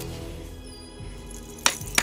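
Music held on sustained notes, then two sharp hand claps near the end.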